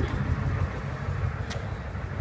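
Steady low rumble of a tow truck's engine idling, with a single light click about one and a half seconds in.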